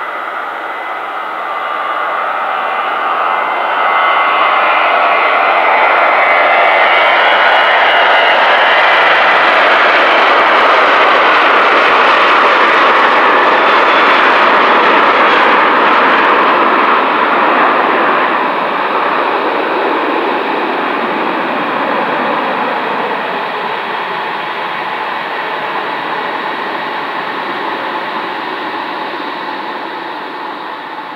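Boeing 737-800's two CFM56-7B jet engines at takeoff power: loud jet noise, with a thin high whine in the first seconds, that builds as the airliner rolls down the runway, stays loudest through lift-off, then slowly fades as it climbs away.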